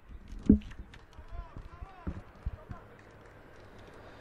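Pitch-side sound of a five-a-side football match on artificial turf: a few dull thumps of the ball being kicked, the loudest about half a second in, with distant shouts from players.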